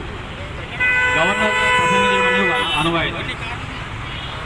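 A vehicle horn sounds one long steady note for about two seconds, starting about a second in, over a man speaking into a microphone.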